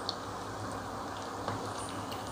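Vermicelli-coated potato cutlets deep-frying in hot oil in a kadai: a steady bubbling sizzle. Two light clicks come from the metal slotted spoon, one at the very start and one about a second and a half in.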